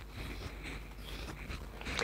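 Wide-toothed plastic comb drawn through curled hair: a faint, irregular rustling and scratching.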